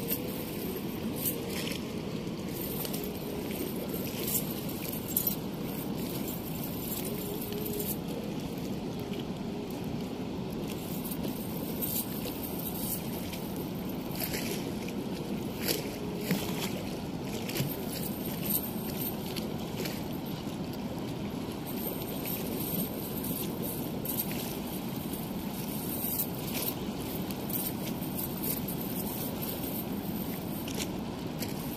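Steady rush of water flowing through a weir's sluice gate, with scattered light clicks.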